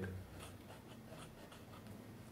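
Fountain pen's 1.1 mm broad nib scratching faintly across paper in short strokes as letters are written.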